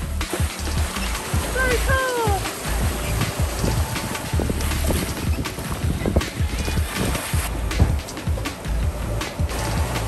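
Wind buffeting the microphone in gusts over the rush of choppy sea, with music playing. A short falling pitched call sounds about two seconds in.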